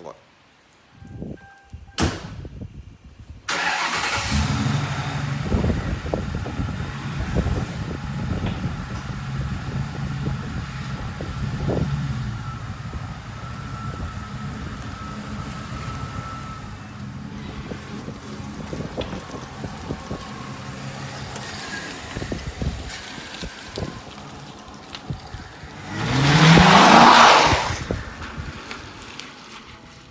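Mercury Grand Marquis V8 starting about three and a half seconds in, after a sharp click, and settling into a steady idle. A louder surge with a rising pitch comes near the end.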